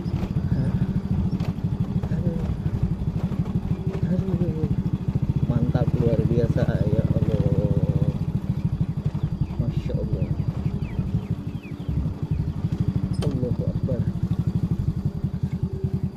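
Small motorcycle engine running at low speed as the bike is ridden slowly along a rough dirt track, a steady low putter that rises a little for a couple of seconds around the middle.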